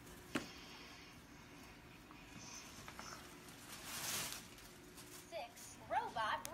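Quiet room with a soft click near the start. About four seconds in there is one short rustle of tissue paper being pulled out of a gift bag.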